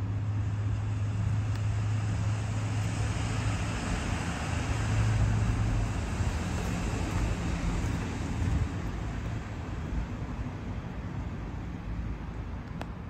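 Road traffic: a low steady rumble with a hiss of vehicle noise that swells about halfway through and fades near the end.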